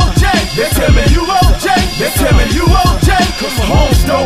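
Hip hop music: a rapper's voice over a drum beat with a deep, regular kick drum.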